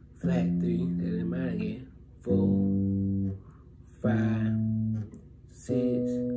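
Electric bass guitar playing slow single notes of a D melodic minor scale. Four plucked notes are each left to ring about a second and a half before the next.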